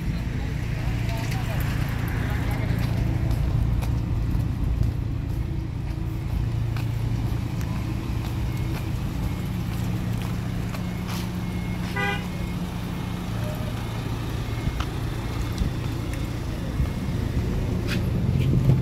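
A vehicle engine idling with a steady low hum, with a brief rapid beeping about twelve seconds in.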